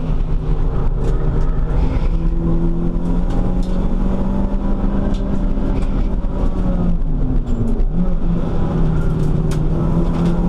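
Race car engine heard from inside the cabin while lapping a circuit, running steadily under load over constant road and tyre noise. Its pitch dips briefly about seven seconds in, then climbs again as the car is driven on through a corner.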